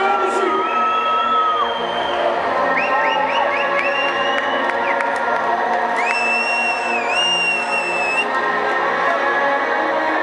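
Loud hardcore dance music over a festival sound system, heard from within the crowd, with the crowd cheering and whooping. Several high tones slide up into long held notes over the steady chords.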